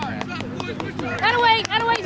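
A high-pitched shout from a spectator, drawn out for about a second from about a second in, over fainter chatter, with a few sharp clicks.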